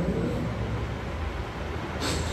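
Steady background hiss with a low, even hum, with no voice over it.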